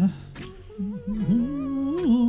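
Singer humming a wordless vocal melody in a pop song, the pitch gliding and wavering; the line breaks off briefly at the start and comes back a little under a second in.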